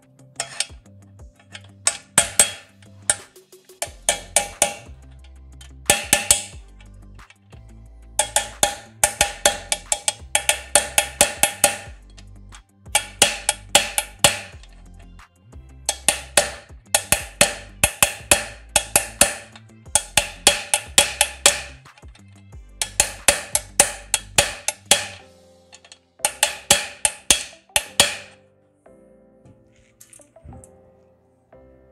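Small hammer striking a wedge in an aluminium door-frame corner, driving it in to lock the corner bracket inside the profiles. The strikes are sharp and ringing, coming in quick bursts of several blows, about five a second, with short pauses between bursts.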